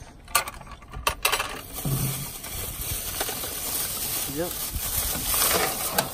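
Loose 9 mm cartridges clinking together inside a plastic bag as the bag rustles and is lifted out of a metal ammo can, with a few sharp clicks in the first second or so.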